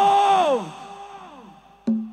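A man's chanted vocal holding one long note that bends downward and fades out with echo. Near the end comes a single sharp percussion knock, the first of the accompaniment's strikes.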